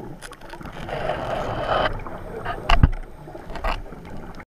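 Muffled underwater sound picked up through a GoPro's waterproof housing: a scuba diver's exhaled bubbles rush past for about a second, then a single loud low thump near the end.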